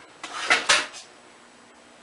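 A short burst of light clattering with two sharper knocks about half a second in. It then falls quiet, leaving a faint steady hum.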